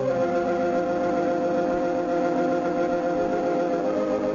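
Organ theme music of an old-time radio show, holding one long sustained chord.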